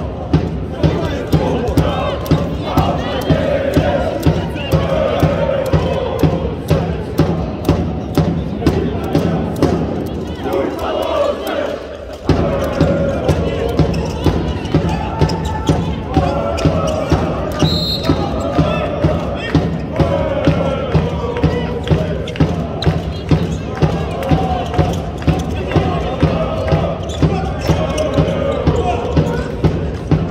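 Group of sports fans chanting and singing in unison over a steady thumping beat, about one and a half beats a second. The beat stops briefly about ten seconds in, then picks up again.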